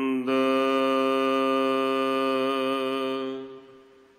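A man chanting the Hukamnama, a verse of Sikh scripture (Gurbani), in slow drawn-out recitation. He holds one long steady note for about three seconds, and it fades away near the end.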